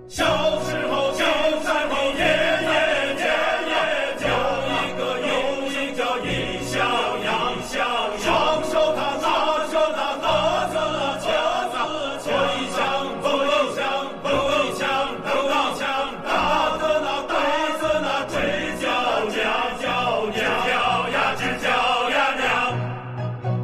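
The drama's theme song: a choir singing with instrumental accompaniment, starting abruptly.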